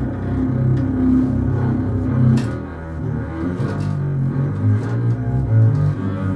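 Unaccompanied double bass played with the bow: a line of sustained low notes moving from pitch to pitch.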